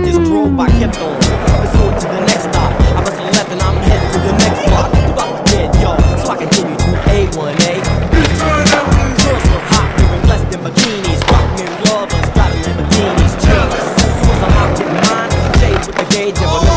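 Skateboards rolling on hard ground, with frequent sharp clacks of boards popping and landing, under loud background music with a steady beat.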